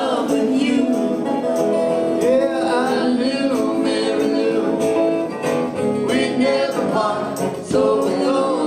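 Live band performing a song, with a singer over the instruments.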